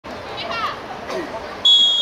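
Girls' voices calling on a football pitch, then near the end a referee's whistle gives one short, steady blast, the loudest sound, for the second-half kickoff.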